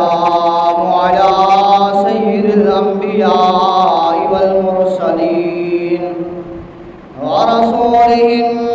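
A man chanting the Arabic opening praises of a sermon into a microphone, holding long drawn-out notes that slide between pitches. The chant fades down about six seconds in, then comes back strongly a little after seven seconds.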